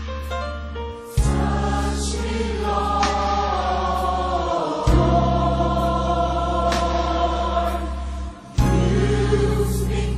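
Gospel choir singing long held chords over a bass-heavy band accompaniment, in phrases with short breaks about a second in, around the middle and near the end.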